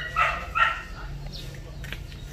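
Small dog barking: a few short, high-pitched barks in the first second.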